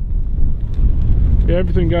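Wind buffeting the camera microphone, a steady low rumble; a man starts speaking about one and a half seconds in.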